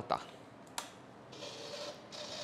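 A single click, then a brief faint hiss from the Yamaha DT200R's fuel system as petrol is let down into the carburettor; the engine is not yet running.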